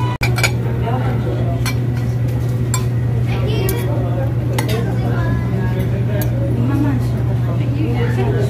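A metal fork and spoon clink against a ceramic plate while eating, with several sharp clinks spaced about a second apart. Under them run a steady low hum and background voices.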